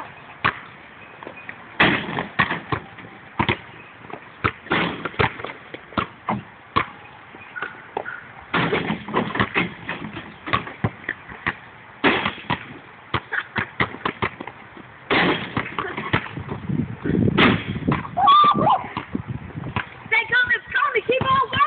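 Irregular sharp thuds and knocks of a basketball being bounced and shot at an outdoor hoop, over a steady hiss. A short voice comes in near the end.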